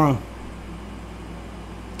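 A voice finishes the word "wrong?", then a steady low hum and faint hiss of background room tone carry on unchanged with no speech.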